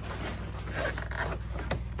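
Plastic scraping and creaking as a snowmobile's small windshield is gripped and worked loose from its mounting nipples, over a steady low hum.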